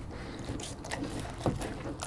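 German Shepherd eating a slice of pizza from a hand, close up: wet mouth smacks and chewing, with a sharper smack about one and a half seconds in.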